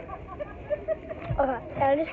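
Speech only: a child's voice, indistinct and quiet at first, getting louder in the second half.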